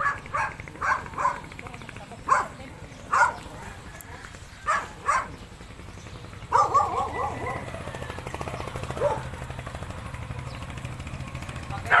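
A dog barking: about eight short barks, several in quick pairs, over the first five seconds. From about halfway through, a person's voice takes over.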